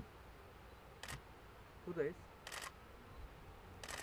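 Camera shutters clicking: a single click about a second in, a quick double click midway, and another near the end.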